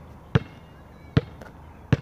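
A basketball dribbled on asphalt, bouncing three times a little under a second apart.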